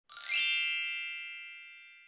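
A single bright chime with a sparkling shimmer on top, struck once and ringing out, fading over about a second and a half: a logo-intro sound effect.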